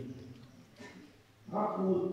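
A pause with only faint room tone, then about one and a half seconds in a man's voice sets in with a held, drawn-out sound.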